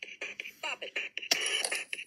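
An original Bop It electronic toy's beat and sound effects, a quick string of short hits with a brief sliding tone, played back from an old video through a small device speaker.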